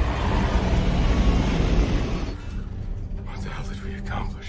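Science-fiction TV soundtrack: a loud, low spaceship-engine rumble with music underneath. It cuts down sharply a little past two seconds in, leaving quieter music.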